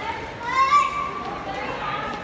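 A young child's high-pitched voice calling out, loudest about half a second in, over the steady background noise of a busy indoor shop.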